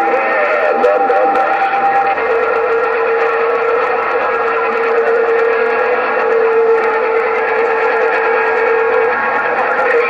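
A President HR2510 radio receiving a signal through its speaker: hissy static with a steady whistle that stops about a second before the end. A second, higher whistle and some warbling sound ride over it for the first two seconds.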